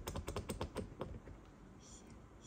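A quick run of small sharp clicks, about ten in the first second, from fingers turning and working a screw in a ceiling-lamp mounting plate.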